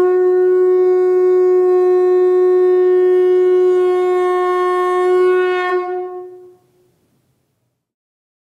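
One long, steady note blown on a horn. It starts suddenly, holds for about six seconds with a brief waver near the end, then fades away.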